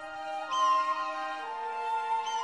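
Slow background music with long held notes. About half a second in, a hawk gives a single high, falling cry.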